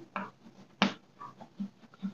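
Chalk tapping and scratching on a blackboard as a word is written, with one sharp click a little under a second in and a few fainter ticks.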